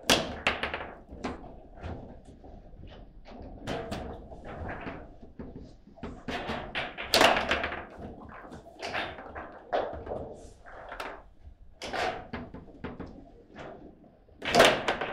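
Table football in play: an irregular run of sharp knocks and clacks as the rod figures strike the ball and the ball hits the table walls. The loudest hit comes about seven seconds in.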